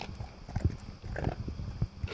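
Golden retriever eating dry kibble from a plastic slow-feeder bowl: irregular chomping and crunching, with his muzzle and the food knocking against the bowl.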